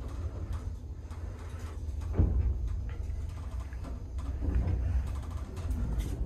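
Passenger lift car travelling with a steady low rumble from its drive, with a single clunk about two seconds in.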